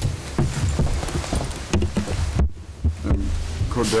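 Irregular dull low thumps and knocks with rustling, picked up close by courtroom desk microphones as a man gets up from his chair. The sound cuts out completely for a moment about halfway through.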